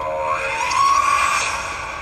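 The Verizon Droid boot sound from an HTC Droid DNA's speaker: a synthesized, robotic electronic voice-like tone saying "Droid". It starts sharply, rises a little in pitch about a second in and then fades, which marks the phone starting up.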